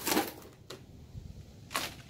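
A few short crackling and clicking handling noises, the loudest near the end, as a resin-coated painting is worked loose from a plastic cutting mat.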